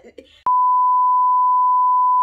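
Test-card tone: a steady, single-pitched beep that starts with a click about half a second in and holds at one level without wavering.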